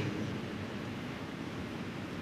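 A pause in the speech: only a steady hiss of room noise picked up by the microphone.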